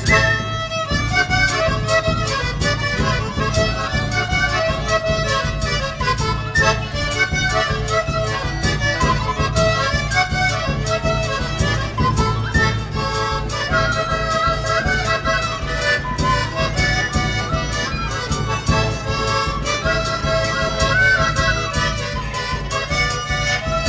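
Lively instrumental folk dance music with a steady quick beat, its melody carried by a reed instrument of the accordion kind.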